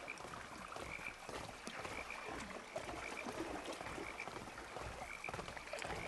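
Frogs croaking faintly at night by still water, one short call about every second.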